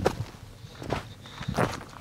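Footsteps of hiking boots on gritty lava-field ground: three steps about three-quarters of a second apart.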